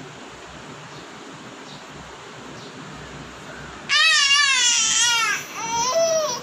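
A baby crying: after a few seconds of quiet room sound, a loud, high-pitched wavering wail lasting about a second and a half, then a shorter rising cry near the end.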